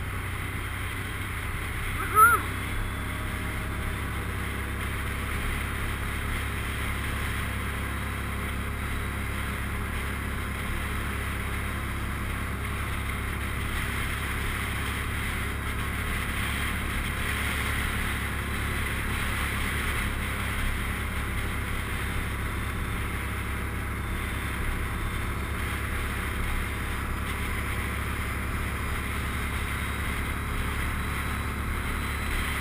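Can-Am Outlander ATV engine running steadily while riding along at an even speed, with wind noise on the helmet microphone. About two seconds in there is one brief, loud, high-pitched chirp.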